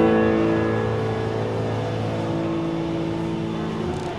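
A piano chord that rings on and slowly fades away, held with several notes sounding together.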